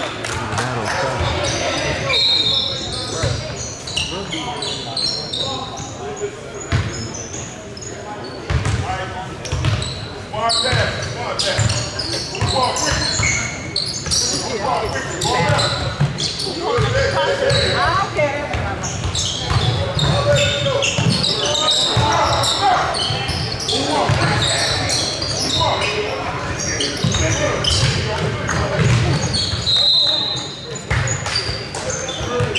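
Basketball game in a large gym: a basketball bouncing on the hardwood court amid the voices of players and spectators.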